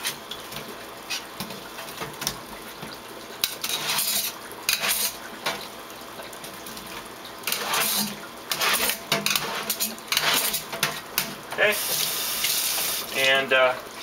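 The back (non-cutting) edge of a hacksaw blade scraping green algae off an algae scrubber screen, in irregular rasping strokes, with water running in a sink.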